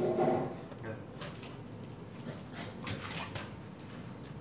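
A pit bull gives a short whine, then a scatter of sharp clicks and scuffs follows as it stirs and gets up to jump for a raised rubber ring.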